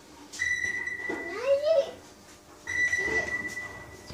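A steady, high electronic signal tone sounding in long beeps, each about a second and a half with a short break between. A child's voice rises over the first beep.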